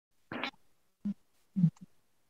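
A few short scratchy bumps and rubs, like a clip-on microphone being handled as the recording starts; the loudest is a dull knock about one and a half seconds in.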